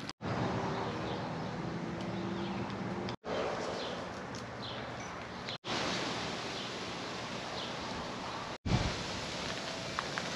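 Outdoor garden ambience: a steady hiss of breeze and rustling leaves with a few faint high chirps. There is a low steady hum in the first few seconds, and the sound drops out briefly three times at cuts between clips.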